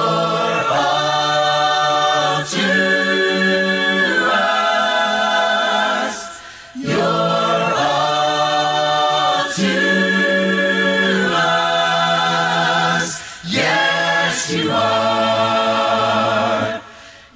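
A church congregation singing a hymn a cappella in harmony, with no instruments. The voices hold long sung phrases, separated by brief breath pauses about six seconds in and again near the end.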